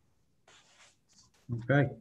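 A pause of quiet room tone with a few faint short rustles, then a man says "Okay" near the end.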